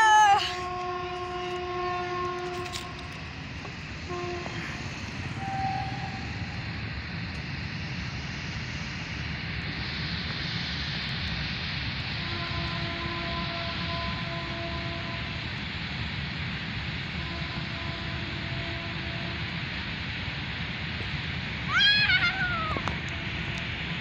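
Freight train running past at a distance, a steady rumble that grows from about ten seconds in. Several long, steady horn-like notes sound: one at the start and two more in the second half. A brief high call rises and falls near the end.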